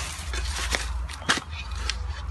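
A metal shovel digging and scraping in loose soil, giving several short, sharp scrapes against a steady low rumble.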